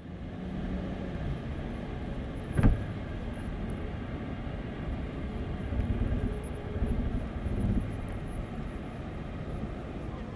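Road noise inside a moving car's cabin at highway speed: a steady rumble of tyres and engine, with a single sharp knock about two and a half seconds in.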